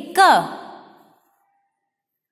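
A woman's voice, one short drawn-out syllable with the pitch rising then falling, fading out within the first second, followed by dead silence.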